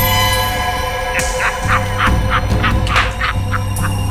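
Tense dramatic background score: a steady held drone with a quick run of about a dozen short, sharp stabs starting about a second in and fading near the end.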